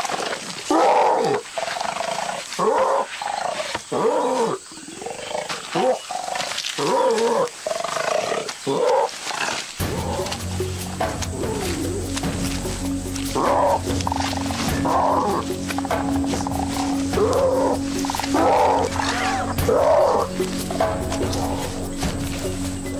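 Orangutans giving a string of loud calls, each one short and arching up and down in pitch, repeated every half second or so. About ten seconds in, a low, steady music bed comes in under them.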